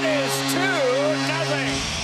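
Arena goal horn blowing one steady low note, with a voice over it; the horn cuts off shortly before the end.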